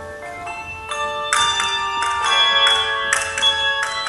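A handbell choir ringing the chords of a tango, groups of bells struck together and left to ring on; the playing grows louder about a second in.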